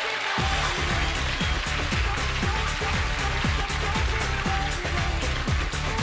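Pop music starting up: a swell rises, and about half a second in a driving beat with bass and drums comes in and carries on steadily.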